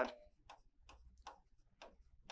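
Chalk on a blackboard while writing: about five short, faint ticks and scratches at uneven intervals, one per stroke of the letters.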